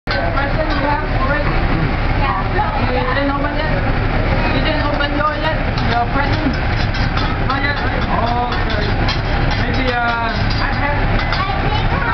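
Many overlapping voices chattering at once, none of them clear words, over a steady low rumble.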